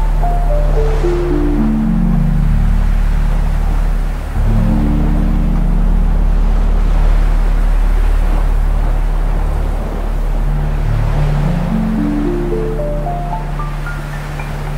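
Dark ambient music: a steady low drone, with a run of soft notes stepping down in pitch at the start and another stepping back up near the end. Under it is a hiss of ocean waves.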